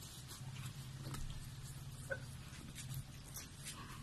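People eating noodles: faint chewing, slurping and the small clicks of forks and cups, over a steady low hum.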